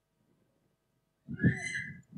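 Near silence, then about a second in a short, high-pitched voice that is a brief spoken answer.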